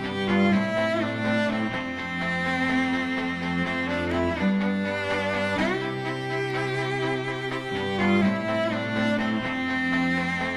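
Bowed cello playing slow, sustained notes in several layered lines, with a low phrase that repeats about every four seconds.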